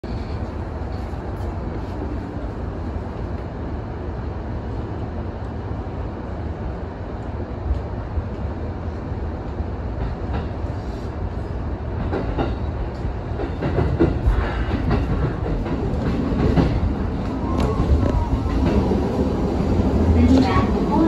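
Electric commuter train running on the Ome Line, heard from inside just behind the driver's cab: a steady low rumble of wheels and running gear that grows louder from about halfway through, with scattered clicks of the wheels over rail joints and points.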